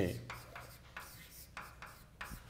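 Chalk writing on a blackboard: a few short, faint scratching strokes as a formula is written out.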